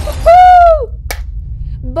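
A woman's short, loud, high-pitched cry that falls in pitch at its end, followed by a single sharp click about a second in.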